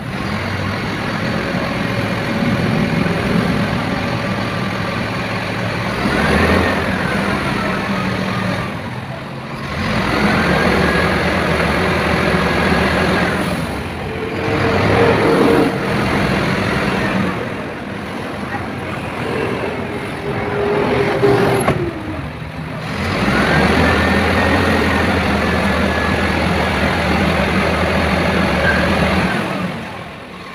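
Truck engine running steadily, with a higher whine that rises and falls over it and people talking. The sound comes in several short takes that cut off abruptly.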